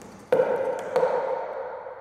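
Two sharp struck sounds about two-thirds of a second apart, each leaving a ringing tone that slowly fades, played by a multichannel sound installation that turns everyday objects into instruments.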